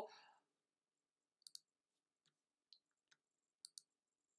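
Faint computer mouse clicks in near silence: a quick double click about a second and a half in, a few fainter single clicks, and another double click near the end.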